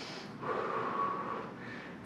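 A woman breathing hard under exertion: one breathy exhale lasting about a second, between counts.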